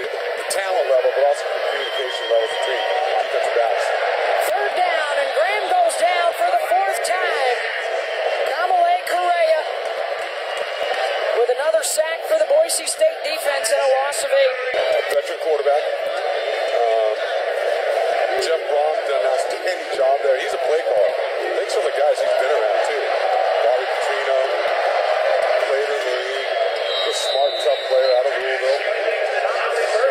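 Voices talking throughout, sounding thin and tinny with no bass, over a steady background haze.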